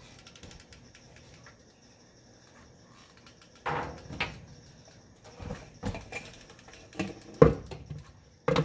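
Handling noise from a plastic bike helmet and a hot glue gun being worked on: quiet at first, then a handful of scattered knocks and clicks in the second half, the sharpest near the end.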